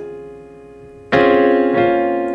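Piano chord voicing of C, D-flat, F and A-flat: the previous notes fade, then the chord is struck about a second in and left to ring out.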